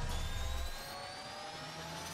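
Synthesized intro sound effect: a slow rising whine built of several tones climbing together, over a low rumble that drops away under a second in.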